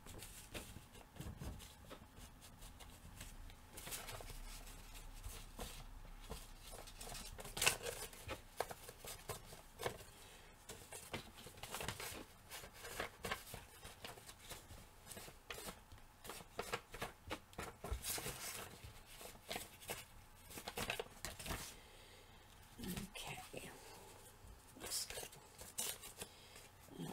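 Paper tags and journal pages being handled. The sound is quiet and made up of scattered rustles, light clicks and taps.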